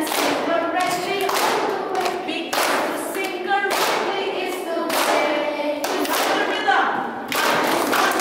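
A group of children clapping their hands together about once a second, with their voices singing or chanting held pitched notes between the claps, as a rhythm exercise.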